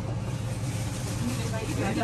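Steady low hum of shop room noise with faint, indistinct voices in the background.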